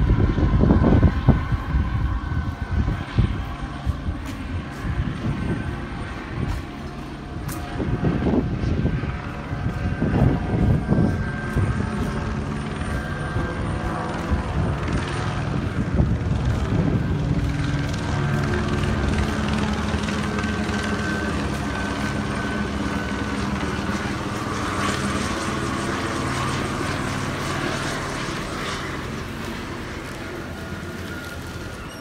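Helicopter circling overhead, its rotor and engine droning steadily and fading slightly near the end. In the first ten seconds, irregular gusty rumbles sit over it.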